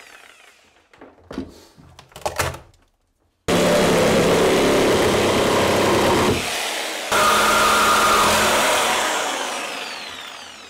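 Corded reciprocating saw cutting through old plywood in a boat's cabin. A few clatters come first; then the saw runs loud and steady for several seconds, eases off briefly halfway, runs again, and winds down near the end.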